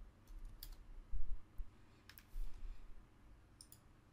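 A few scattered clicks of a computer keyboard and mouse, with dull low knocks in between, the loudest about a second in.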